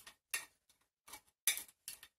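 Metal palette knife working thick acrylic paint: several short, sharp scrapes and taps at uneven intervals, the loudest about a second and a half in.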